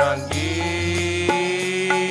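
Sikh kirtan music: harmonium and voice hold one long note, with a few tabla strokes.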